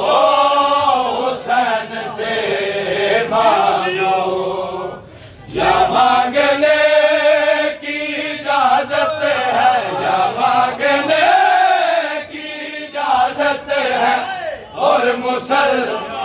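Men chanting a noha, a Shia lament, in long sung phrases, with a brief break about five seconds in.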